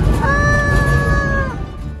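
A high-pitched voice holding one long, steady call for over a second before breaking off near the end, over a low rumble.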